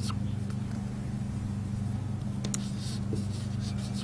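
A marker writing on a whiteboard: a few faint, short strokes, the clearest about two and a half seconds in, over a steady low hum.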